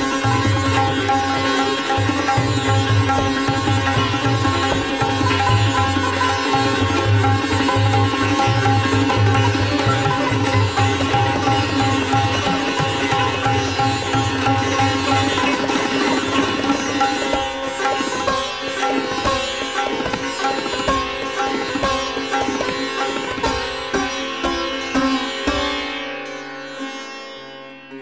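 Sitar playing a fast drut gat in Raag Puriya, set in teentaal. About two-thirds of the way in, the playing breaks into separate, emphatic strokes, and near the end the sound fades out while the strings ring on.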